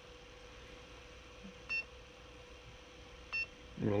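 Two short electronic beeps from the Prusa Mini's control-panel buzzer, about a second and a half apart, as the menu knob is clicked. A faint steady hum runs underneath.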